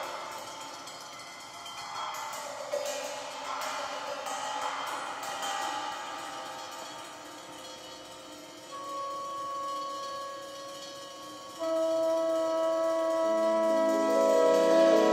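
Instrumental jazz-fusion passage: cymbals and bell-like metal percussion shimmer and clatter over the first half. Long held notes then enter about two-thirds through, stacking into a louder sustained chord near the end.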